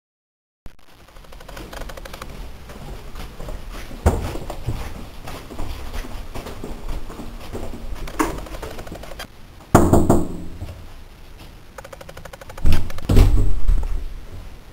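Footsteps along an indoor hallway with camera handling noise. Several loud thumps break in, about four seconds in, around ten seconds, and loudest near the end. The sound starts abruptly after a brief silence.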